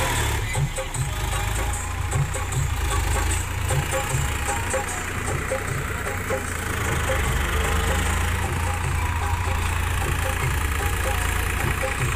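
Tractor diesel engine running steadily at idle, a continuous low rumble.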